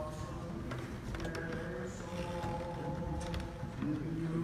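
Orthodox liturgical chanting: voices singing long held notes that move to a new pitch only now and then, with a few faint clicks.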